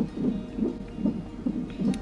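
Fetal heart monitor playing the baby's heartbeat through its Doppler speaker: a fast, steady run of whooshing beats.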